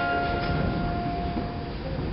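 Acoustic guitar: a chord strummed just before ringing on and slowly fading, with a light touch on the strings about half a second in.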